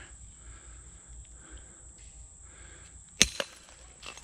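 Quiet footsteps in flip-flops over leaf litter and scattered glass on a forest floor, with faint scattered ticks and one sharp click about three seconds in.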